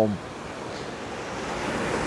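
Steady rush of sea surf, slowly growing louder toward the end.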